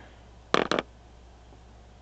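Three quick, sharp clicks close together about half a second in, over a low steady hum.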